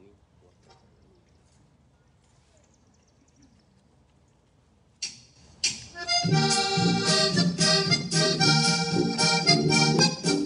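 Near silence for about five seconds, then a polka starts suddenly: a button accordion playing over a recorded backing track with a steady beat.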